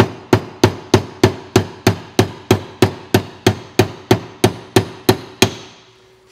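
A small hammer tapping a metal step wedge into the top of a hatchet handle through the head's eye, in steady strikes about three a second, each with a short metallic ring. The strikes stop about five and a half seconds in. The wedge is being driven to spread the handle wood front to back and seat the head tight.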